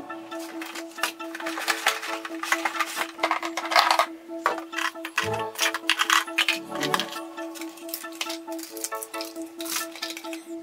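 Background music with a steady held note, over repeated clicking and clattering of hard plastic toy kitchen pieces being handled and set into a plastic sink basin and dish-rack basket.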